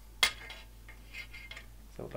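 Steel sidesword hilts knocking together: one sharp metallic clink about a quarter second in, then a few faint clicks as the guards shift against each other.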